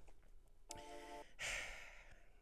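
A man's short, faint closed-mouth hum, then a breathy exhale like a sigh.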